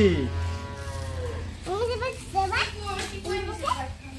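People's voices: a long drawn-out vocal call that trails off in the first second, then a few short spoken exclamations.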